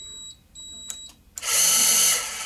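Pluto 10 electric screwdriver starting up about three-quarters of the way in and running loudly, after a faint steady high whine. It is being cycled with a rotary transducer attached, a setup in which it only intermittently runs through its break time.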